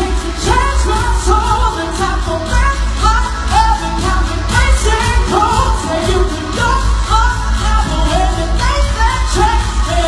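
Pop song with a solo voice singing a gliding melody over a loud backing track with heavy, steady bass.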